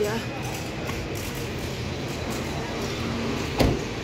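Steady traffic and engine noise, with one sharp thump a little before the end.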